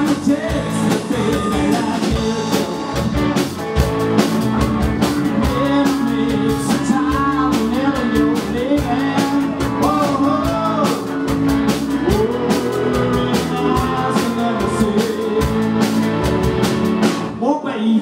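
Live rock band playing with electric guitars, bass guitar and drum kit, over a wavering melodic lead line. The sound thins briefly near the end before the band comes back in.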